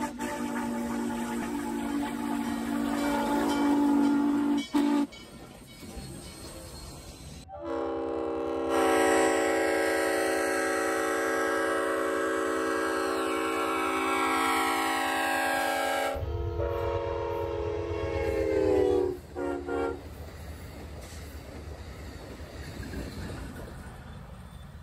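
Train whistles and horns sounding one after another: a whistle chord for about five seconds, then a long locomotive horn blast of about eight seconds, a lower horn chord, and two short blasts. After that comes the steady rumble of a train running by.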